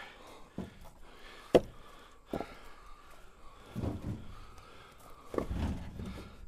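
Dry black locust firewood rounds being handled and stacked: a few sharp wooden knocks as the rounds strike each other, the loudest about one and a half seconds in. Duller thuds follow around four and five and a half seconds in.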